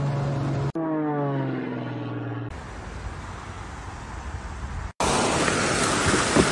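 Single-engine propeller stunt plane's engine, a steady drone that drops in pitch about a second in as the plane passes, then a duller rumble. Near the end a sudden loud rushing hiss cuts in.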